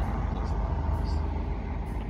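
A car driving past on the street, its engine and tyres a steady low rumble, heard through an open car window.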